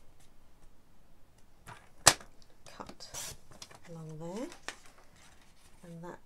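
A sliding-blade paper trimmer cutting a strip of patterned paper on the diagonal: a sharp click about two seconds in, then a brief hiss of the blade running through the paper. A short murmured voice rises in pitch near the end.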